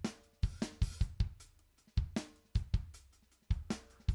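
Software drum kit in Groove Agent SE 5 playing a sparse funk pattern of kick, snare and hi-hat hits, with short gaps between strokes.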